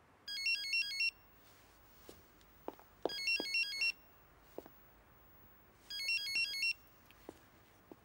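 Mobile phone ringing: three bursts of a fast warbling electronic ringtone, each under a second long and about three seconds apart. A few faint knocks come between the rings.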